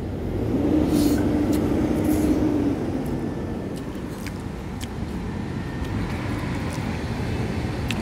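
Road traffic running steadily in the background, with a low steady hum that swells about half a second in and fades out near three seconds.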